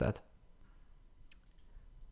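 Two faint, sharp clicks close together a little over a second in, over quiet room tone.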